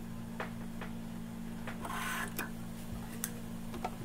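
Irregular light clicks and one short rustle about two seconds in, from hands working at the presser foot of a Brother 2340CV coverstitch machine and the fabric under it. The machine is not stitching. A steady low hum runs underneath.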